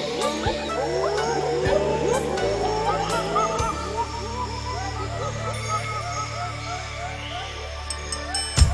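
A chorus of many short, overlapping animal calls, each a quick slide in pitch, over sustained low music notes; the calls thin out after about four seconds.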